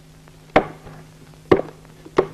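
Two loud, hollow footsteps on wooden boards, about a second apart: a man stepping up into a wooden witness box, each step ringing briefly.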